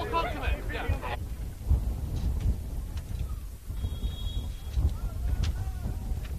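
Wind rumbling on an outdoor microphone, with faint distant voices shouting across the field.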